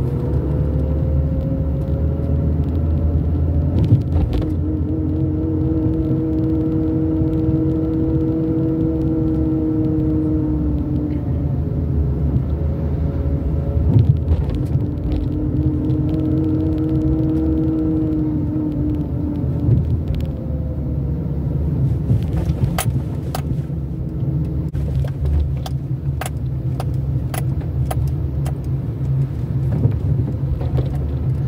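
Car engine and road rumble heard from inside the cabin while driving slowly, the engine hum rising and falling in pitch with speed. Scattered sharp clicks in the last third.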